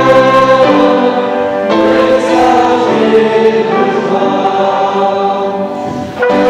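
Congregation singing a hymn together, in held notes that change every second or so, with a brief break at the end of the line.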